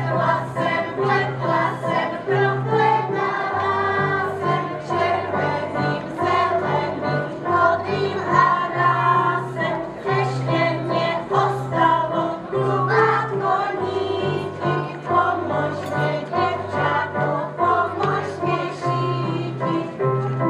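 A group of young children singing a folk song together, accompanied on an electronic keyboard whose bass line alternates between two low notes.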